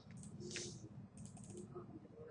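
Faint clicking of computer keyboard keys, with a quick run of several keystrokes a little past the middle.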